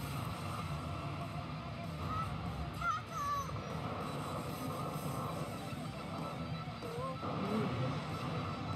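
Anime soundtrack playing: background music over a steady low sound, with a few short gliding tones about two to three seconds in and again near the end.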